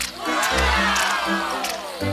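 A crowd-cheer sound effect: many voices together in one long call that falls in pitch, over upbeat background music.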